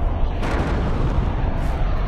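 Explosions from a rocket salvo striking a hillside: a continuous low rumble of blasts, with a sharper one about half a second in.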